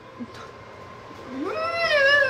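A person's drawn-out, whining vocal cry that swoops up in pitch past halfway in, after a stretch of quiet room tone.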